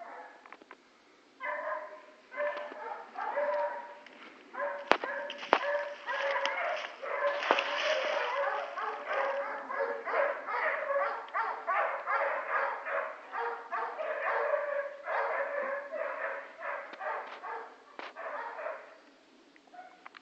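An animal's short pitched calls in rapid runs, starting about a second and a half in and stopping shortly before the end, with a sharp click about five seconds in.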